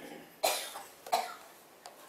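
A person coughing twice in quick succession, about half a second in and again just after one second.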